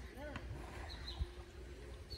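Faint, distant human voices over a low outdoor rumble, with a short high bird chirp about a second in.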